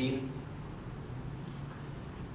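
A pause in a man's speech: his voice trails off at the very start, then only a steady low hum and faint room noise.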